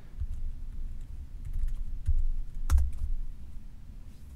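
Computer keyboard keystrokes as a numeric passcode is typed in: a few scattered key clicks, the loudest about three-quarters of the way through, over dull low thumps.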